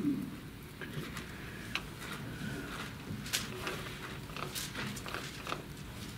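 Thin Bible pages being turned, with soft paper rustles and scattered small taps and crackles as the book is leafed through to a passage.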